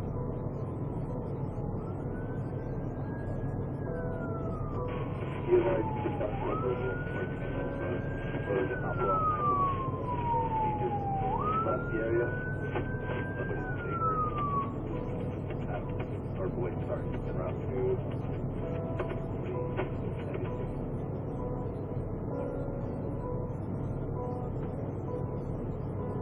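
Police siren in wail mode, heard inside a patrol car's cabin: three slow cycles, each rising quickly and then falling slowly, starting about two seconds in and stopping about fifteen seconds in, over a steady low engine hum. A brief thump comes about five seconds in.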